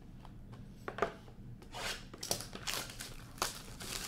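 Hockey card packaging being torn open and crinkled by hand: a sharp click about a second in, then a run of tearing, crinkling strokes.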